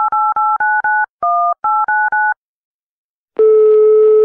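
Telephone keypad touch-tones: about nine quick two-note beeps as a number is dialed, one held a little longer. After a short silence, a steady single-pitch ringing tone starts near the end, the call going through.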